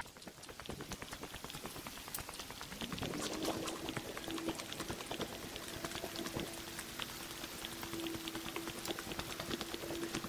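Footsteps crunching on a leaf-strewn stone and gravel path, with dense crackling clicks throughout. About three seconds in, a faint steady hum rises slightly in pitch and then holds.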